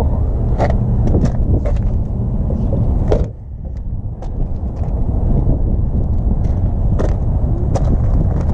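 BMW E46 M3's S54 straight-six idling steadily, a low even rumble, with scattered handling clicks. About three seconds in, a single knock as the driver's door is shut, and the rumble briefly sounds quieter.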